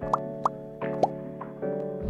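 Soft, steady background music with several short rising 'plop' sound effects, quick upward blips about half a second apart, the pop-in sounds of animated icons appearing on an infographic.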